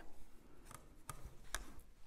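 Faint handling of a clear acrylic quilting ruler slid and pressed over cotton fabric on a wooden table: a soft rub with a few light ticks.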